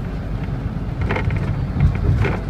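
Steady low rumble of a vehicle's engine and tyres on the road, heard from inside its cabin, with a brief louder knock near the end.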